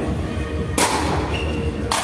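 Two sharp knocks about a second apart, echoing in a large sports hall: a sepak takraw ball being kicked during play.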